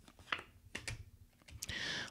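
Tarot cards being handled and drawn from a deck over a cloth-covered table: a few light, sharp card clicks, then a short soft hiss near the end.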